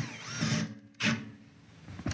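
Cordless drill turning a step drill bit into a sheet-steel enclosure, running in short bursts, with the motor's whine and the bit cutting the metal. Quieter near the end.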